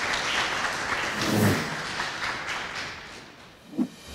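Audience applauding, a dense patter of clapping that fades away toward the end.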